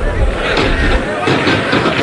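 Stadium crowd noise during a televised football match: a dense, steady din of many voices.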